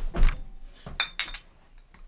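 Glass clinking: a loud knock just after the start, then a sharp clink with a brief ring about a second in and a lighter one right after it.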